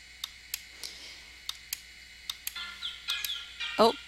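Light, sharp computer clicks every quarter to half second. About two and a half seconds in, a phone's ringtone starts: pitched notes, some gliding downward, with a louder burst near the end.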